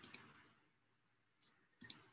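A few faint, short computer mouse clicks, two just after the start and two or three near the end, in otherwise near silence.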